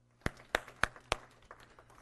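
Four sharp hand claps, evenly spaced about a third of a second apart, in the first half, then quiet room tone.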